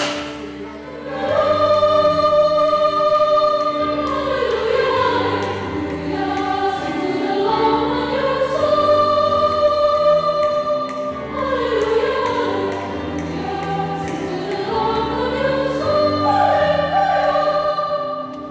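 Mixed choir singing a piece in parts, holding chords and moving between them, with an electronic keyboard accompanying. The sound dips briefly just after the start, then the singing comes back in full.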